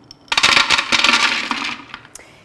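Toasted almonds poured into a food processor bowl: a rattling clatter of many small hard pieces landing. It starts about a third of a second in and lasts about a second and a half.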